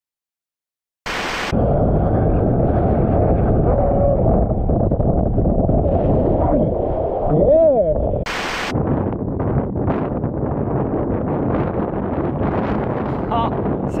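Heavy wind buffeting the microphone of an action camera on a windsurfer sailing at speed: a loud, low, continuous roar. About seven and a half seconds in, a short sound rises and falls in pitch. The noise turns choppier after an abrupt change about eight seconds in.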